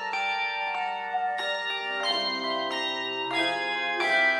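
Handbell choir playing: chords of handbells struck together and left to ring into one another, with lower bells joining about two seconds in.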